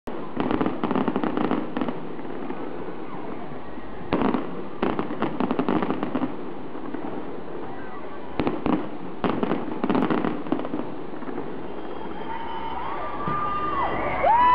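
Fireworks going off in three rapid crackling volleys, each lasting about two seconds, with a steady background rumble between them. Near the end, high rising-and-falling whistles come in.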